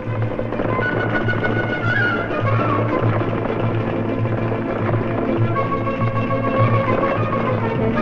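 Instrumental background music with held notes over a steady low pulse.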